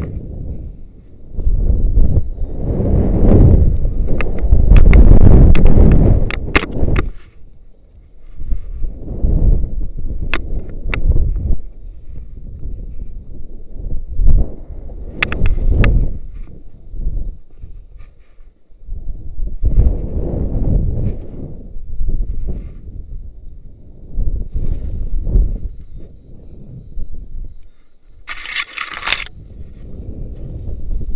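Wind rushing over a YI action camera's microphone in repeated surges as a rope jumper swings back and forth on the rope after the jump, loudest in the first few seconds and weaker on later swings. A few sharp clicks from the rope gear come through now and then.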